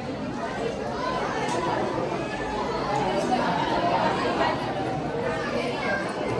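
A crowd chattering: many overlapping voices at once, a steady hubbub with no single voice standing out.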